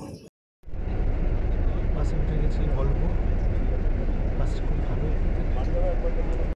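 Steady engine and road noise of a moving coach bus heard from inside the passenger cabin, heavy in the low end. It begins after a brief cut to silence about half a second in.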